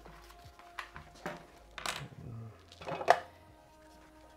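A few sharp clicks and knocks from a magazine being fitted into a magazine pouch and handled under its bungee retention, the loudest about three seconds in. Faint background music runs underneath.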